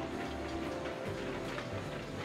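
Arcade ball game's electronic music playing, with light scattered clicking like small plastic balls rattling on the machine's spinning wheel.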